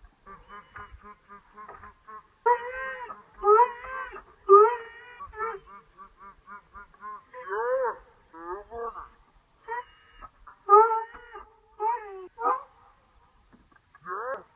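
A dog yipping and whining excitedly in quick, high-pitched calls, with runs of rapid small yips between louder bursts of barking.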